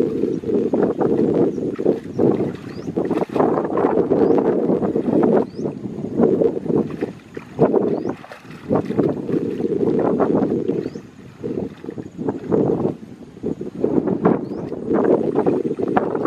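Water splashing and sloshing around legs wading through shallow muddy water, a dense rushing noise broken by irregular splashes, easing off briefly twice.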